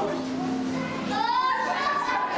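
Background chatter of visitors with children's voices. About a second in, a child calls out in a high voice.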